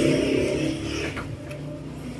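A passing motor vehicle's engine fading away. A few faint clicks follow in the second half.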